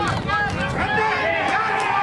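Several spectators' voices shouting over one another, a busy sideline crowd babble.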